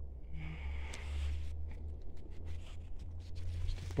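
Low, steady background rumble with a faint rustle: outdoor ambience on a handheld recording, with no distinct event.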